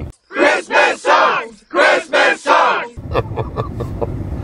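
Edited-in clip of a group of voices singing or shouting together in about three short bursts. The cabin background drops out while it plays and returns about three seconds in.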